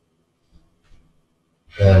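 Near silence, a pause in dialogue with a couple of faint small sounds, then a man starts speaking near the end.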